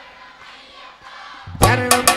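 Live devotional music fades to a faint lull, then about one and a half seconds in the accompaniment comes back in loudly with sharp percussion strokes and held melody notes.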